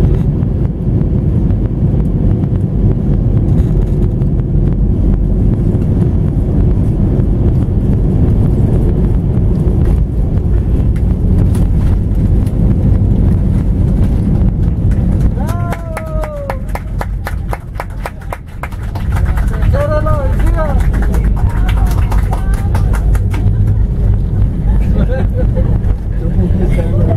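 Airbus A320 airliner landing, heard from inside the cabin: a loud steady low rumble of engines and airflow, with a fast run of light knocks and rattles in the second half as it rolls on the runway. The rumble dips briefly about two-thirds of the way through, and short voices are heard near the end.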